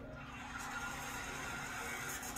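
Soundtrack of a film trailer playing over loudspeakers into the room: a rush of noise that swells about half a second in, over a steady low hum.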